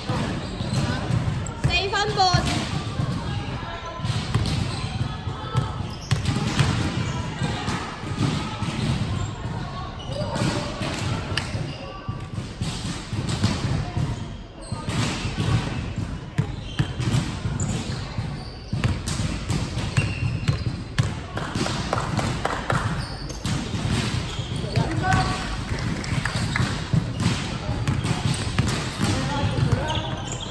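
Basketball bouncing on a hardwood court in a large, echoing sports hall, mixed with players' indistinct voices and calls.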